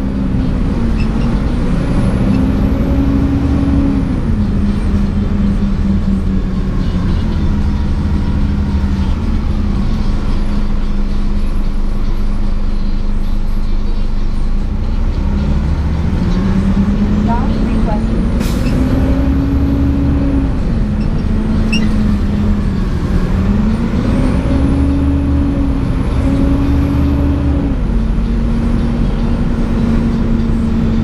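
Interior of a 2004 Gillig Advantage low-floor transit bus under way: the engine and drivetrain drone steadily, rising in pitch as the bus accelerates and falling back as it slows, several times over, with a faint high whine that rises and falls along with it.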